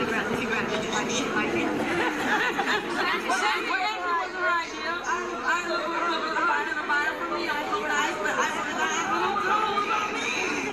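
Speech only: several people talking at once in overlapping chatter.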